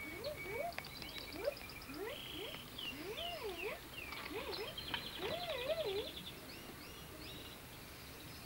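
Birds chirping and trilling in high, fast runs, mixed with repeated lower calls that rise or waver up and down in pitch about twice a second. The calling dies away about two-thirds of the way through.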